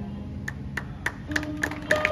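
Hand clapping that begins with a few scattered claps and picks up into quick, steady rhythmic clapping over the second half, under held notes of instrumental music.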